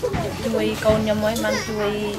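Speech: a woman talking in Khmer.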